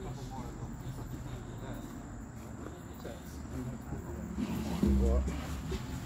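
Indistinct voices of people talking at a distance over a steady low hum. A louder voice comes with a low bump about five seconds in.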